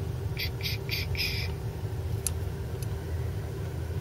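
A steady low background rumble, with four short high-pitched chirps or rustles in quick succession in the first second and a half and a faint tick a little after two seconds.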